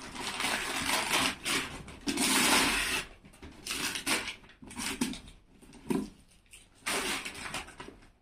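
Gold metallic gift-wrapping paper being torn and crinkled as a present is unwrapped, in irregular rustling bursts, the longest about two seconds in.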